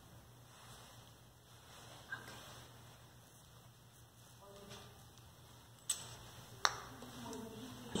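A few sharp clicks of small toy objects being picked up off a cloth mat and put into a fabric bag, two of them close together late on, in a quiet room.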